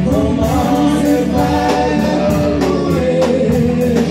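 Live gospel worship song: several women singing together into microphones, holding long notes, over a band with drums.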